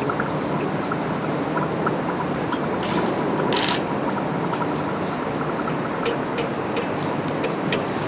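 Steady rushing room noise, like a lab extraction fan, with a brief hiss about three seconds in. Near the end comes a quick run of light, sharp clicks and taps, like glassware and metal fittings being handled.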